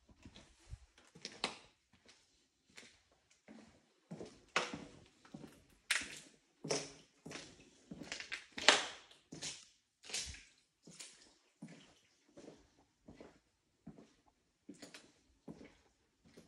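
Footsteps on a hard floor littered with debris, uneven steps coming roughly every half second, loudest near the middle.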